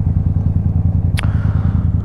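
Motorcycle engine idling steadily with an even low rumble, and a single short click a little past halfway through.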